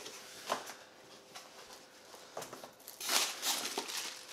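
A few soft handling clicks and rustles, then about three seconds in a short burst of crinkling from plastic packaging being handled.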